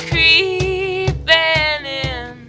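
Acoustic song: a woman singing lead and holding long notes, over acoustic guitar and a steady cajon beat.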